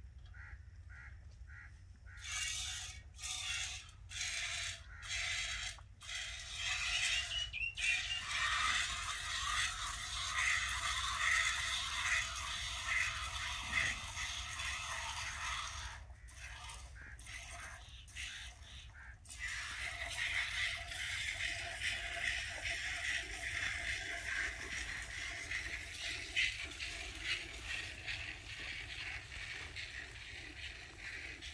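A cow being milked by hand: jets of milk squirting into a metal pot. At first they come as separate squirts under a second apart, then they run together into a near-continuous hiss, with a short pause about two-thirds of the way in.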